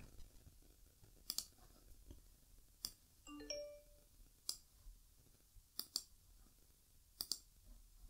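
Faint computer mouse clicks, several in quick pairs, spaced about a second or more apart. About three and a half seconds in, a brief faint chime of a few short stepped notes.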